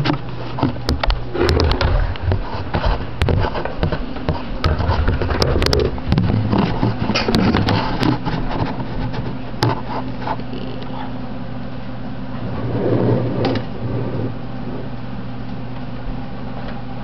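Handling noise from a camera being picked up and carried: irregular knocks, clicks and rubbing thumps for the first ten seconds or so, then a short burst of it again near the end, over a steady low hum.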